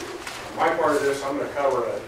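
A man speaking, his voice picking up about half a second in, with the words not clearly made out.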